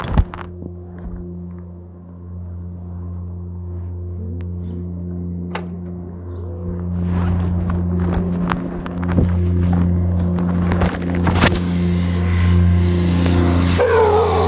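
A steady low hum with several even overtones runs under rustling, scraping and knocks that sound like a phone being handled or carried, busier and louder in the second half.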